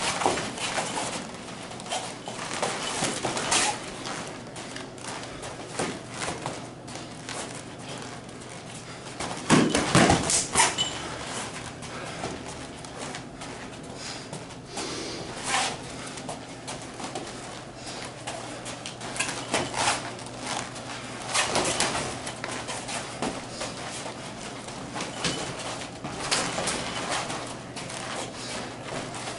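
Light-contact kung fu sparring: irregular thuds, slaps and scuffs of feet stepping and shuffling on the studio mats and of hands striking and blocking, with a cluster of louder impacts about ten seconds in.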